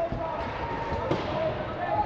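Ice hockey rink sound in a reverberant arena: distant voices calling out, with a few sharp knocks of stick and puck about half a second and a second in.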